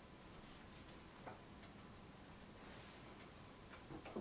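Near silence, with a few faint, irregular clicks and ticks from hands working on a plasticine clay sculpture.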